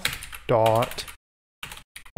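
Typing on a computer keyboard: a few sharp key clicks near the start and again near the end, with a brief dead-silent gap in between.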